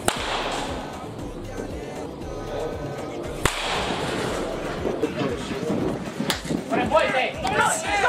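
Baseball bat hitting pitched balls in a batting cage: two sharp cracks about three and a half seconds apart, each followed by a short rattle. Background music runs throughout, and voices come in near the end.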